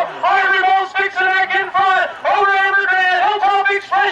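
A man's voice calling a harness race, fast and high-pitched, in a quick unbroken run of syllables whose words are hard to make out.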